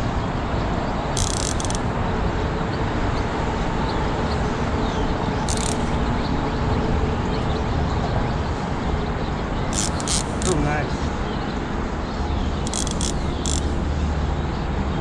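Fishing reel clicking in about four short bursts a few seconds apart, during a bite, over a steady rumble of traffic from the highway bridge overhead.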